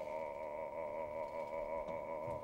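An operatic bass voice holding one soft, sustained sung note with a wide vibrato, in a live opera performance.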